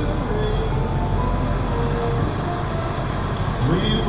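Steady low rumble of road and engine noise heard from inside a car driving slowly through town traffic. A faint voice rises near the end.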